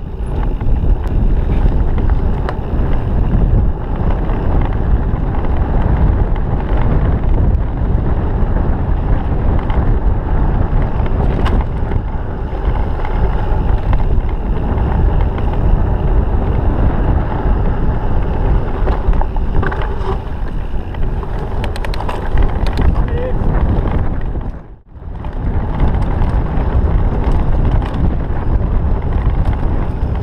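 Wind rushing over an action camera's microphone on a mountain bike riding fast down a dirt trail, mixed with the clatter and rattle of the bike over rough ground. The noise dips briefly about five seconds before the end.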